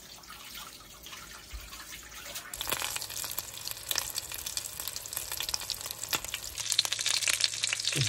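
A whole breadcrumb-coated rainbow trout frying in hot oil in a pan, sizzling and crackling. Faint at first, the sizzle turns louder and denser about two and a half seconds in and keeps building.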